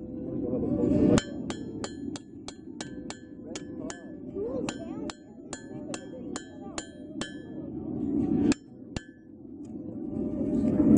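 Blacksmith's hammer striking hot steel on an anvil: quick runs of strikes about four a second, each leaving a bright anvil ring, with short pauses. A low rushing noise swells twice and cuts off suddenly, about a second in and again near the end.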